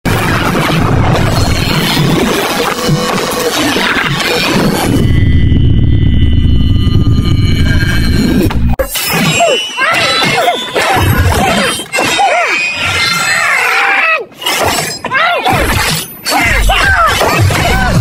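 Action-film fight soundtrack: music mixed with crashing, shattering impact effects. About halfway in, a heavy low rumble gives way to a stretch of gliding, squealing sounds broken by short gaps.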